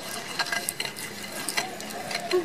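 Stone pestle grinding and scraping peanut paste round a rough stone mortar (Indonesian cobek and ulekan). The scraping is gritty and uneven, with a few sharper clicks.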